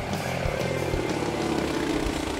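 A floatplane's propeller engine passing low, its drone falling slowly in pitch as it goes by, over background music.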